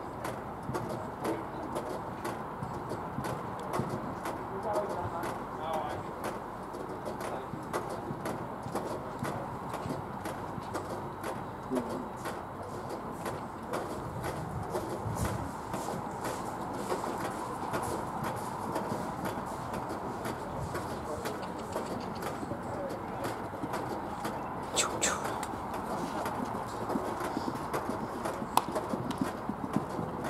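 A horse cantering on grass, its hoofbeats sounding as light repeated thuds, over a steady murmur of distant voices from spectators.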